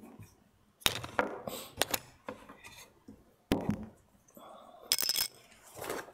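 A handful of sharp knocks and clinks as carving tools and a wooden block are set down and moved about on a workbench.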